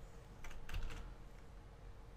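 A quick cluster of computer keyboard key presses, a handful of sharp clicks about half a second in, over faint room tone.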